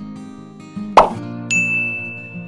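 Acoustic guitar background music; about halfway through a sharp pop, then a high bell ding that rings on: the sound effect of an on-screen subscribe-button animation.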